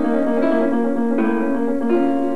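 Upright piano playing slow, sustained chords, moving to a new chord a little over a second in. These are the chords of a passage being worked out bar by bar as it is dictated.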